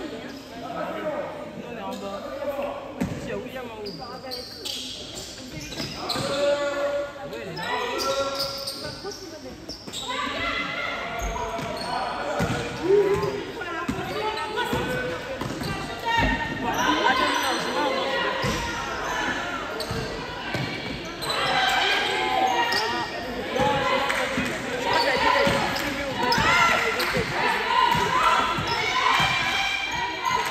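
A basketball being dribbled and bouncing on a gym's hard floor during play, the bounces echoing in a large hall, with players' voices calling out throughout, more of them from about ten seconds in.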